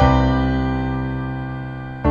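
Background music: a keyboard chord struck at the start, held and fading slowly.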